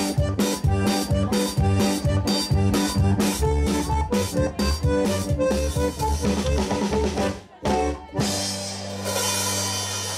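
Live folk dance music: a button accordion plays a tune over a quick, steady drum-kit beat. About seven and a half seconds in the beat breaks off, and a long held accordion chord with a cymbal wash follows.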